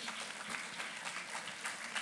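Audience applauding, a steady spread of many hand claps.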